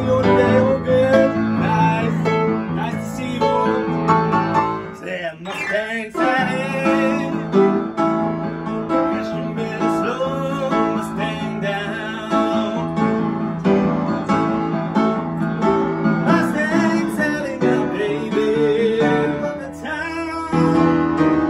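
Live piano playing with a man singing along, a steady up-tempo song; about five seconds in the music thins briefly around a sliding vocal run.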